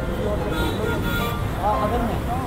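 Steady road traffic noise, a continuous low rumble, with voices talking over it.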